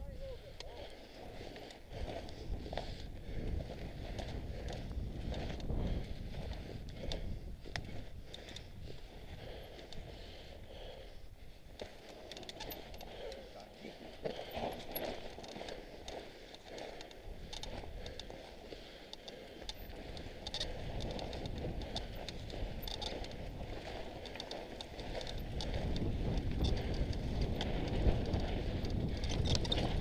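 Mountain bike rolling down a rocky, gravelly trail: tyres crunching over loose stones, with scattered knocks and rattles from the bike. It gets louder over the last few seconds.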